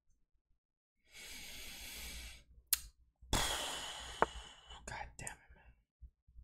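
A man exhaling in two long, heavy sighs of frustration, then a few short clicks of a computer mouse as a chess move is played.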